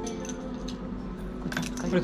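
Keys jangling and clinking in a few short taps as a key on a beaded fob is handled and set down on a counter.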